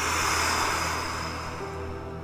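A long breath blown out, a whooshing exhale that fades away over about two seconds, over quiet background music.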